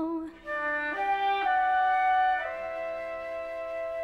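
Show-tune orchestral accompaniment: a sung note with vibrato ends just after the start, then soft sustained instrumental chords, woodwind-like, move to a new chord about a second in, again half a second later, and once more near the middle.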